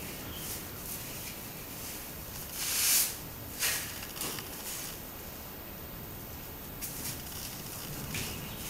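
A few brief scraping, rustling noises over a quiet background, the loudest a half-second hiss that swells and fades about three seconds in, with a shorter one just after.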